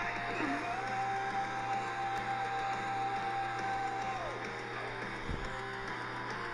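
Cartoon soundtrack playing from a phone's speaker and picked up by a second device: music with one long held note that starts about a second in and slides down just after four seconds, over a steady low hum.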